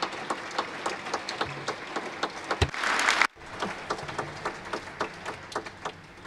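Audience applauding: many hands clapping, swelling louder about two and a half seconds in, cutting out for an instant just after three seconds, then dying away near the end.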